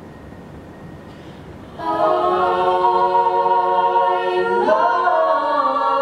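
Group of voices singing a held chord with no instruments, starting about two seconds in and moving to a new chord near the end.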